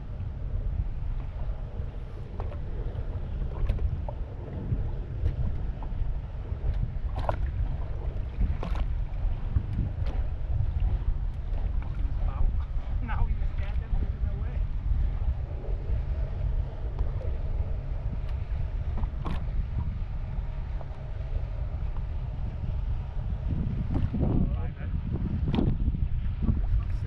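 Wind buffeting the microphone on open water: a steady low rumble, with a few light knocks scattered through it.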